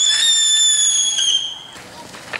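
A whistling firework going off: one loud, shrill whistle that sinks slightly in pitch and cuts off sharply shortly before the end.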